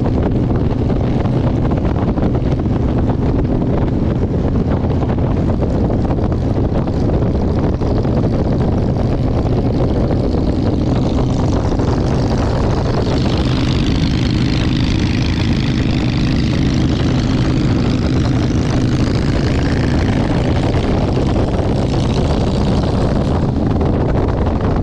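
Cruiser motorcycle engine running steadily at road speed, heard from the rider's seat with wind rush over it; a brighter hiss swells and fades in the second half.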